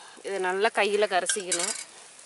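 A woman speaking, with a steel ladle clinking and scraping against a stainless-steel bowl as curry powder is stirred in, the clinks ringing about a second and a half in.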